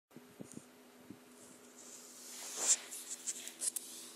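Handling noise over a faint steady hum: a few soft clicks, then a rustling, scraping swell about two and a half seconds in and a quick run of short scuffs as the camera is moved.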